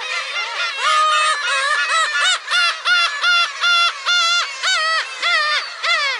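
Black-tailed gull giving a close, loud series of about a dozen mewing calls, a little over two a second, starting about a second in. Behind it, softer overlapping calls of other gulls.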